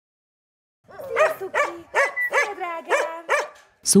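A dog barking in a quick run of about seven high-pitched barks, starting about a second in.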